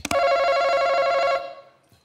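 Game-show face-off buzzer: a hand slaps the podium button with a click, then a steady electronic ringing tone holds for about a second and a half and fades out. It signals that a contestant has buzzed in first.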